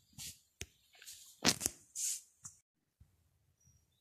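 Several short clicks and soft rustling noises, one of them a pair of sharper clicks about a second and a half in, all within the first two and a half seconds.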